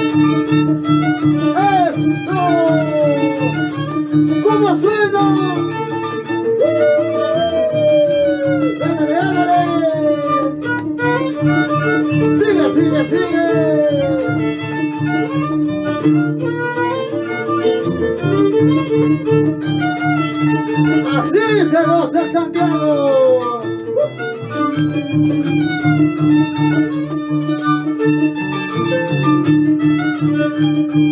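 Andean violin and harp playing an instrumental passage of shacatán dance music. The violin melody slides between notes over steady low accompaniment.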